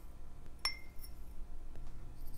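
A metal measuring spoon clinks once against the rim of a small glass beaker as ground seed mix is tipped in: a single sharp tap with a short glassy ring.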